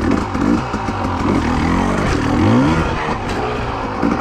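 Husqvarna TE300i two-stroke dirt bike engine running and revving up twice as the bike moves off across the grass.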